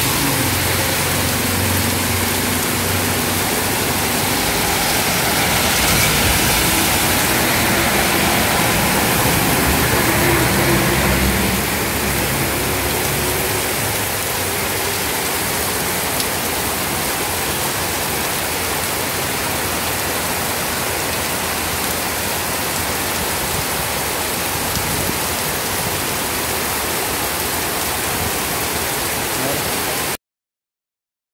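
Heavy rain pouring onto a paved street, a steady dense hiss that swells a little for a few seconds in the middle. Motor vehicles pass on the wet road, their engines humming low under the rain in the first seconds and again near the middle.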